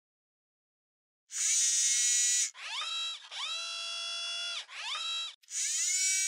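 Synthesized intro sound effect for a logo animation: after a second of silence, a bright, buzzy high tone, then three pitched tones that slide up as they start and down as they end, then another bright buzz near the end.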